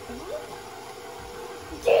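KitchenAid Professional 550 HD stand mixer running with a steady hum, its paddle beating pound cake batter in the steel bowl. A short vocal sound comes early, and a child's loud voice cuts in near the end.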